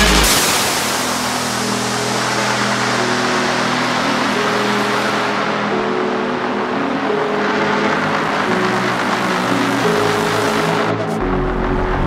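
Liquid drum and bass breakdown: the drums and deep bass drop out, leaving held synth pad chords under a hissing noise wash. The deep bass comes back in about a second before the end.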